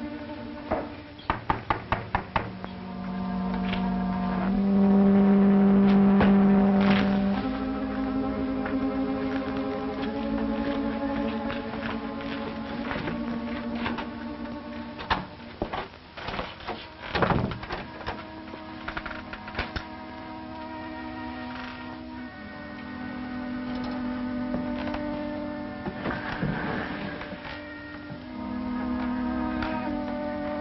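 Film-score background music of held orchestral chords that swell loudest a few seconds in. A quick run of about seven sharp knocks comes about a second in, and scattered knocks and thuds come around the middle.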